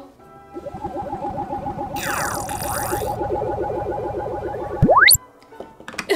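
Cartoon ray-gun sound effect: a fast pulsing electronic warble with falling zaps a couple of seconds in, ending in a sharp rising whistle near the end as the ray hits.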